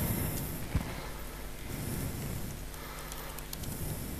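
A few faint clicks of a MacBook laptop keyboard being typed on, and a single soft knock about three quarters of a second in, over the quiet, steady room tone of a lecture hall.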